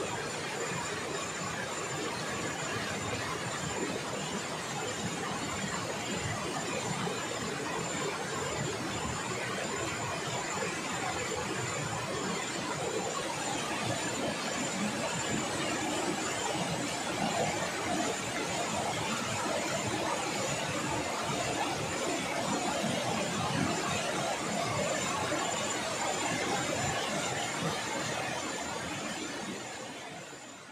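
Steady rushing noise of a river, with a thin high steady whine above it, fading out at the very end.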